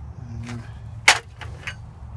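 A single loud, sharp metallic crack about a second in as a pickle-fork ball joint separator is worked up under a front ball joint to break it loose, with two fainter clicks around it.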